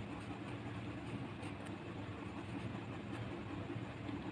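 Pen writing on notebook paper, faint scratchy strokes, over a steady low background hum.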